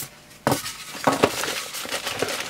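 Packaging being handled as a microphone is pulled from its cardboard box and polystyrene insert: a sharp knock about half a second in, then scraping and light knocks.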